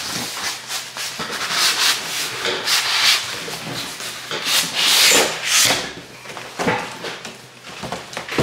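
Cardboard shipping box being handled and opened: cardboard rubbing and scraping in irregular bursts as an inner box is slid out, loudest about five seconds in.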